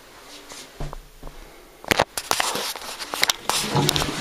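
A few sharp clicks and knocks about halfway through, then water starting to rush into a porcelain squat toilet pan as it is flushed, getting louder toward the end.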